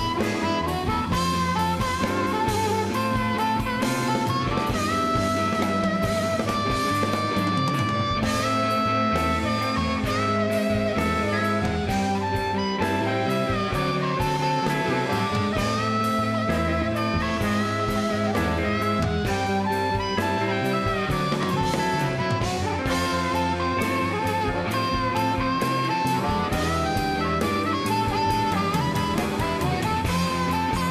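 Live electric blues band playing: an amplified harmonica carries the lead with held, wavering notes over electric guitar, bass guitar and drums.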